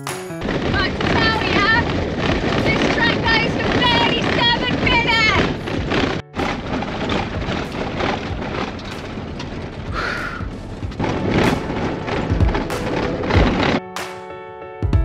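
Loud, continuous rattling and rumbling of a Toyota D-4D diesel van driving over a corrugated dirt road, heard inside the cabin. A woman's voice calls out over it for the first few seconds, its pitch wobbling.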